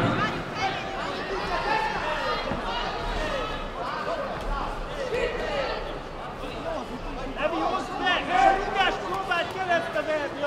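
Indistinct chatter of several voices in a large hall, with one voice coming through louder near the end.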